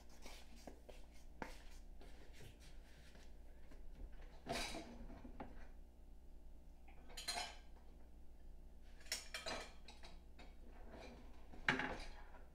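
Faint clinks and clatter of dishes and utensils being handled in a kitchen: a handful of separate knocks spread out over several seconds, the loudest near the end.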